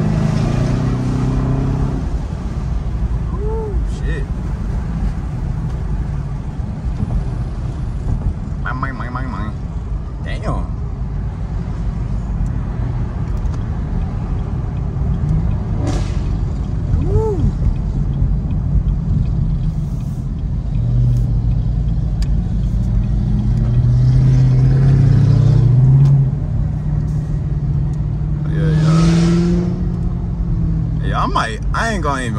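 V8 muscle-car engines heard from inside a Chevrolet Camaro ZL1's cabin while driving in traffic: a steady low drone that swells louder about two-thirds of the way through and rises in pitch again near the end.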